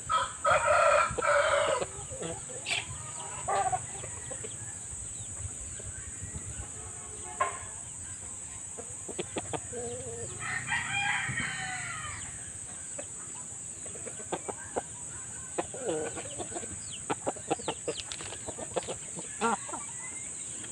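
Gamefowl roosters crowing: one long crow right at the start and another about halfway through, with short clucks and calls scattered between.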